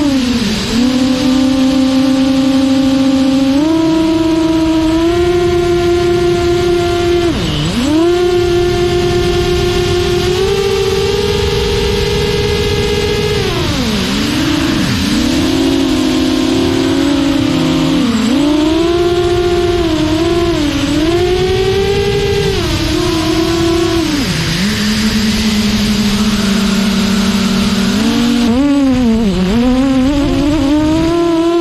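Brushless motors and two-blade 6-inch propellers of a GEPRC Mark4 quadcopter whining in flight. The pitch holds at one level for a few seconds at a time, steps up and down with the throttle, and dips sharply several times as the throttle is chopped.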